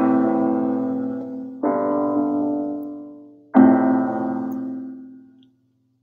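Piano chords struck slowly, about one every two seconds, each left to ring and fade: the opening of a slow song.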